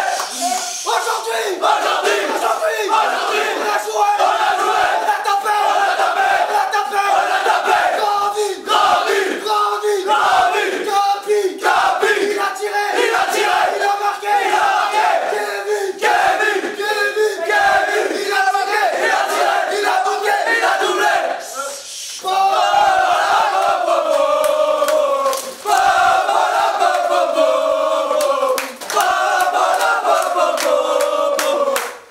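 A group of footballers chanting and singing loudly together in a small room, celebrating a cup win. About two-thirds of the way in, the chant turns into three long sung phrases, each sliding down in pitch.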